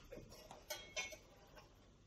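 A few faint, light clicks and taps as a metal square is set and moved against a stone worktop.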